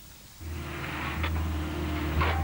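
Diesel engine of a mechanical excavator running steadily at a constant low pitch while it digs, coming in about half a second in.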